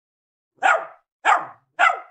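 A dog barking three times, short single barks about half a second apart.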